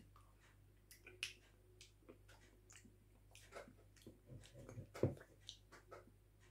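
Faint mouth sounds of someone tasting a spoonful of sauce: scattered small smacks and clicks, with a short soft knock about five seconds in.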